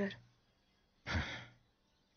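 A person's short sigh: one breathy exhale of about half a second, about a second in, just after the end of a spoken word.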